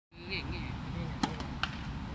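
Tennis ball hits during a rally: two sharp pops a little over a second in, less than half a second apart, the first one the louder.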